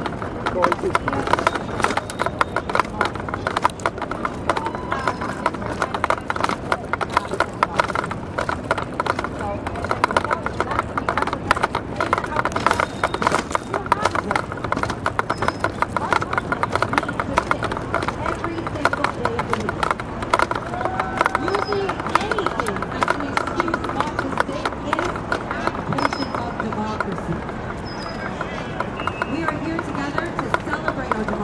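Footsteps of someone walking on a paved path, with indistinct distant voices throughout.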